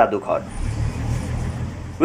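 A steady low rumble with a faint hiss above it, starting about half a second in.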